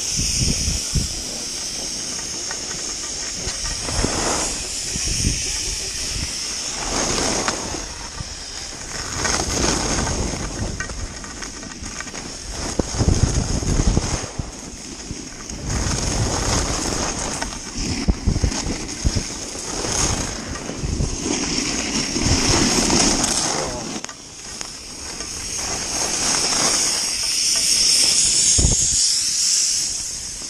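Atomic skis carving and scraping over packed snow during a fast run, with wind rushing over the microphone; the scraping swells and fades with each turn.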